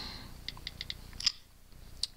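A quick run of about six light, sharp clicks from fingers working an iPhone 5 in an Otterbox Defender case, the last click the loudest.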